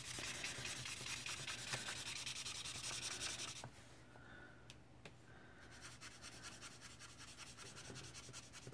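Felt tip of a Lémouchet alcohol marker rubbed back and forth across paper in quick, scratchy strokes, filling in a large area of colour. The strokes drop away about three and a half seconds in, then resume more lightly.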